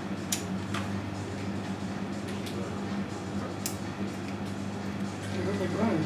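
Steady low hum of room sound with three sharp clicks spread through it, and a voice starting near the end.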